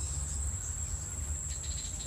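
Insects trilling in a steady, high-pitched, unbroken tone, over a low rumble.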